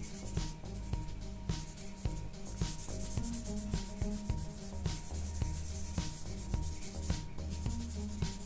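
A large paper blending stump rubbed over graphite on sketchbook paper in repeated short strokes, a dry rubbing hiss as it smooths the shading into a soft, even blend.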